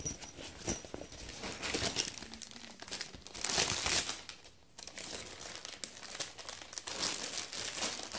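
Thin shiny plastic bag crinkling and rustling on and off as it is handled, loudest about halfway through.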